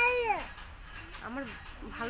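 A toddler's high-pitched wordless vocal cry, held for about half a second and dropping in pitch at the end, followed by two shorter vocal sounds.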